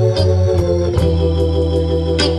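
Live blues band playing an instrumental passage between sung lines: sustained organ chords, in the manner of a Hammond, over a steady bass line and drums.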